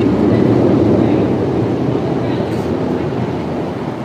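Loud, steady rumbling noise that swells in the first second and slowly fades.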